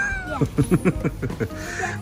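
A girl laughing: a high squealing note that rises and falls, then a run of short giggles.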